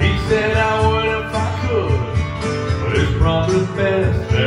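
A man singing into a handheld microphone over a country karaoke backing track with guitar.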